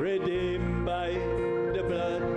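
A hymn sung by voices with instrumental accompaniment, steady and unbroken.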